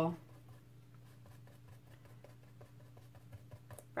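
Small paintbrush dabbing paint onto a foam stamp: a few faint, soft ticks, more of them near the end, over a steady low hum.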